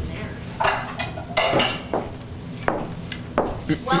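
A handful of sharp knocks and clatters, about a second apart.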